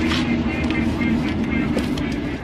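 Small hard wheels of a loaded hand truck rolling across concrete, a steady rumbling hum with a few light rattles, stopping just after the cart halts.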